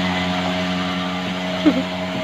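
Small motorcycle engine running with a steady drone, gradually fading.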